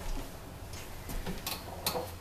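A person's footsteps as she walks a few paces and takes her place: a handful of light, sharp taps and clicks at uneven intervals, with a low bump at the start.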